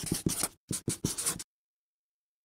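Marker pen writing on paper in a quick run of short scratchy strokes, with a brief break about half a second in, stopping about one and a half seconds in.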